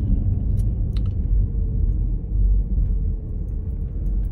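Steady low rumble of a moving car heard inside its cabin, with two faint clicks about half a second and a second in.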